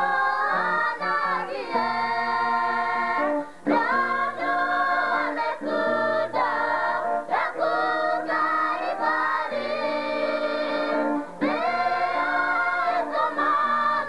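A choir singing a gospel song in several voices, phrases held and then broken off every few seconds, over steady held low notes.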